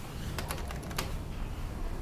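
A quick run of about half a dozen light clicks within half a second, over a steady low hum.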